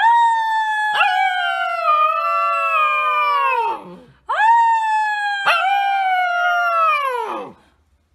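Husky puppy howling twice, each howl lasting about three and a half seconds. Each one rises quickly at the start, then slides slowly down in pitch and drops away at the end.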